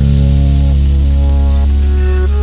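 Background music: a held chord over a deep sustained bass note, with a few slow melody notes changing.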